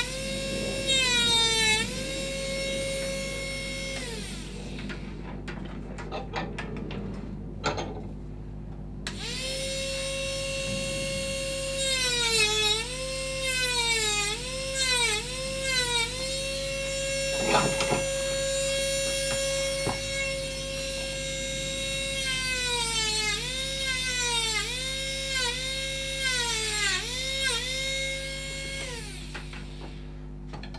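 Handheld rotary carving tool with a burr grinding into a wooden carving: a high motor whine that dips in pitch each time the burr bites into the wood and rises again as it is eased off. It stops about four seconds in, starts again about nine seconds in, and winds down near the end.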